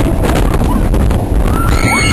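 Wooden roller coaster train running fast along its wooden track, with a loud, steady low rumble and wind on the microphone. About halfway in, a high, sustained scream from riders comes in on top.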